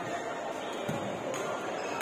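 Badminton play in a large, echoing sports hall: a thud of a player's feet on the court a little under a second in, and a sharp racket-on-shuttlecock hit about one and a half seconds in, over the steady chatter of players' voices.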